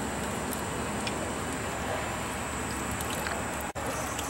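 Vincent screw press running steadily, its drive and turning screw working sewage sludge and cottonseed hulls against the screen, a wet mechanical churning with a low hum. The sound cuts out for an instant near the end.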